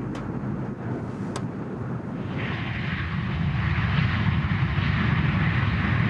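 Jet engines of an easyJet Airbus airliner in flight: a steady rushing noise with a low rumble, swelling louder and gaining a hissing edge about two seconds in.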